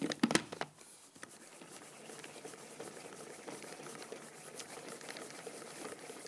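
Hand-cranked Pro Chef Quattro food processor being turned steadily, its Rotomax gearing and whipping paddle making a fine, even rattle as they whip cream. A few sharp knocks come just before the steady cranking begins.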